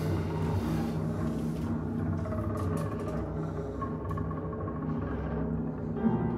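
Bowed double bass sustaining low notes, with sparse drum-kit strokes and cymbal over it.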